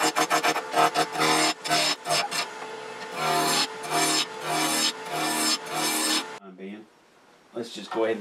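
Roughing gouge cutting a square wood blank round on a spinning lathe: the interrupted cut on the corners gives a rapid clattering at first, then a run of buzzing passes a little under two a second. The cutting stops abruptly a little over six seconds in.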